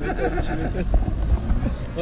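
Men's voices talking and chuckling in conversation, fading after the first half-second, over a steady low rumble.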